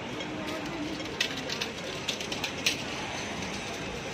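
Busy city-street background: steady traffic noise, with a cluster of sharp clicks between about one and three seconds in.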